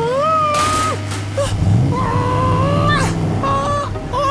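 A cartoon creature making whining, cat-like cries, with several drawn-out calls that bend up and down in pitch, over a steady low hum.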